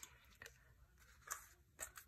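Near silence with a few soft, brief rustles of paper pages being turned by hand in a handmade journal.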